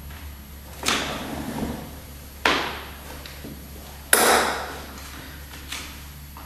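Three sudden knocks about a second and a half apart, each trailing off over most of a second, the third the loudest: a person shifting a metal folding chair and sitting down on it on a wooden floor.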